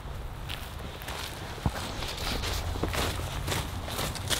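Footsteps walking through dry fallen leaves, an irregular crackle of steps with one sharper crack about a second and a half in.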